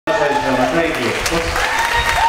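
Audience applauding, with voices calling out and cheering over the clapping; the sound cuts in abruptly.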